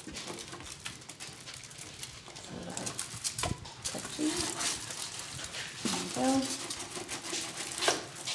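Thin spring-steel sheets sandwiching a dampened wooden ukulele side and a heating blanket being slid and worked into a wooden side-bending jig: a run of scraping, rustling and light metal clicks, with short vocal effort sounds in between.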